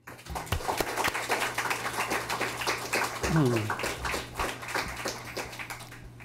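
Audience applauding: many hands clapping at once, easing off slightly in the last second.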